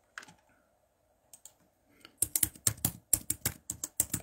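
Typing on a computer keyboard: a few faint taps early on, then a quick run of keystrokes, about seven a second, starting a little after two seconds in.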